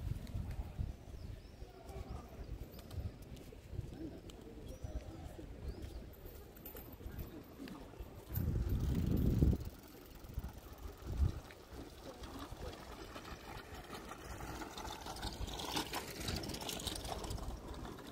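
Open-air ambience of a city square on foot, with faint bird calls over a low, uneven background. Midway, a gust of wind hits the microphone as a loud low rumble lasting about a second. A brighter hiss swells near the end.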